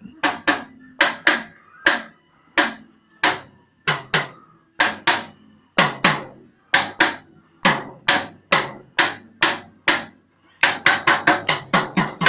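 Toddler beating a child's toy drum kit with sticks: single, unevenly spaced drum hits about two a second, each with a short ring, then a quick run of hits near the end.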